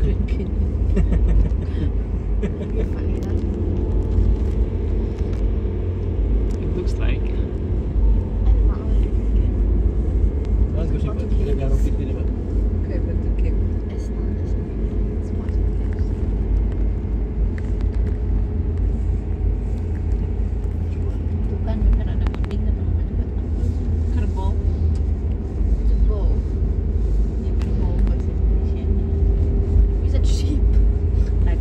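Steady low rumble of a car's engine and tyres on a paved road, heard from inside the cabin while driving, with a faint hum running underneath.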